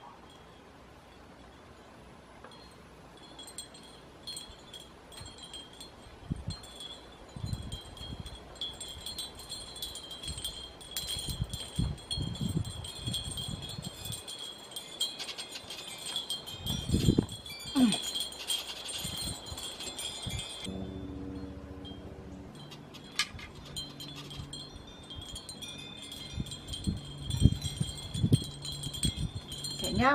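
Hanging glass wind chimes tinkling, with many small clinks over a steady high ringing. Occasional low knocks and rubs come from a terracotta pot being handled on the table.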